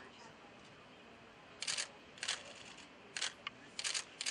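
Camera shutter firing in short rapid bursts, four of them in the second half, over a faint outdoor background.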